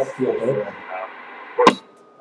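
CB radio receiver speaker carrying a transmission: garbled speech over steady static. Near the end the static cuts off with one sharp crack.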